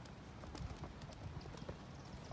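Color guard flag being spun and handled: irregular soft thuds and light knocks from the pole, the flapping silk and the spinner's steps.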